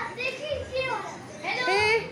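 A child speaking in a high-pitched voice, in short bursts near the start and again near the end.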